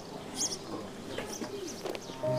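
Outdoor ambience with birds chirping in short, scattered calls.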